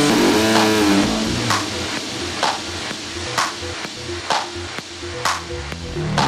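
Minimal techno track in a breakdown, with the deep bass and kick dropped out. A sparse electronic pattern is left, with a sharp percussive hit about once a second and a falling synth glide near the start.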